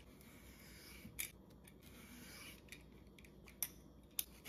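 Y-shaped vegetable peeler drawn down a zucchini, shaving off thin ribbons: faint, repeated slicing strokes, with sharp ticks about a second in and near the end.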